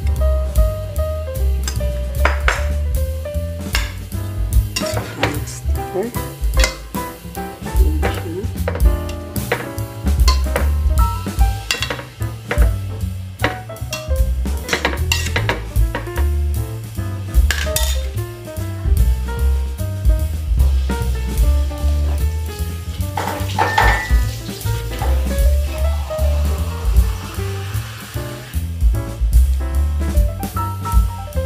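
Metal spoon scraping and clinking against an aluminium pot as mushrooms and corn are stirred, with many sharp clicks. Background jazz music with a steady bass line plays throughout.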